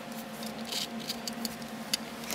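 Handling noise from a plastic digital caliper: a few light clicks and rustles as it is worked by hand, over a faint steady hum.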